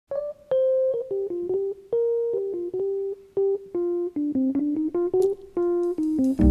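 Keyboard playing a slow single-note melody as the song's intro, one note struck at a time at about two to three notes a second, drifting downward in pitch.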